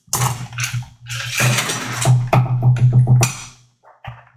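Metal cocktail shaker being shaken hard, a fast, even rattle that stops shortly before the end.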